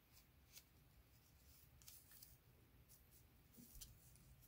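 Near silence: room tone with a few faint rustles and taps of a paper pattern piece being handled and laid over fabric.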